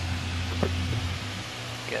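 A man's voice pausing mid-sentence: a low steady hum for about the first second, then a word near the end, over an even background hiss.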